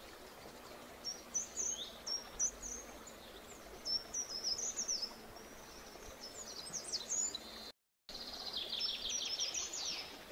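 A bird singing: several bursts of quick, high chirps and whistled notes over a faint steady hiss, then a rapid trill near the end. The sound drops out completely for a moment just before the trill.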